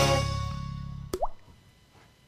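The last chord of a TV show's intro jingle fading away, then a single short bloop sound effect with a quickly rising pitch about a second in.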